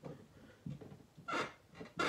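A few soft creaks and rustles from a noisy chair as a seated person shifts in it, with a brighter, short creak about a second and a half in.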